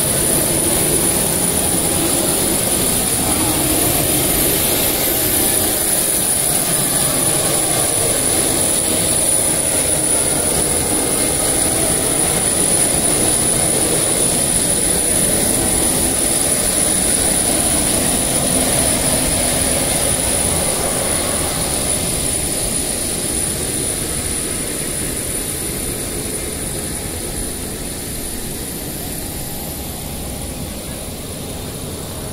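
Steady jet-turbine noise with a constant high-pitched whine, easing off over the last several seconds, with crowd voices.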